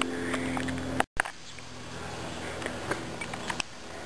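Quiet outdoor background noise with a few faint clicks and a momentary dropout to silence about a second in.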